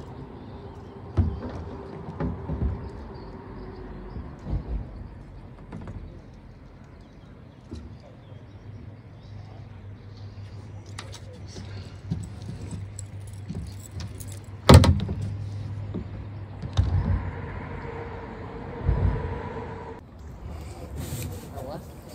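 Scattered knocks and rattles, with a low steady vehicle hum for several seconds in the middle. One sharp, loud knock comes a little past the halfway point.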